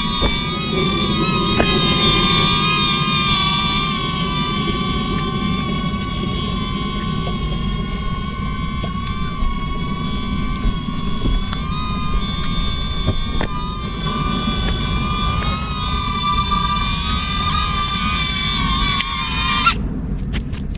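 DJI Neo mini drone's propellers whining as it flies an automatic circle, a steady high buzz with several pitch lines that waver slightly, over a low rumble. Near the end the whine cuts off suddenly as the drone settles onto the pilot's palm and its motors stop.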